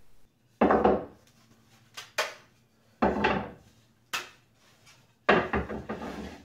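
Thick shellac-coated wooden game pieces clacking against each other and knocking onto a wooden workbench as a stack that has stuck together is pulled apart: a series of separate sharp knocks, roughly one a second.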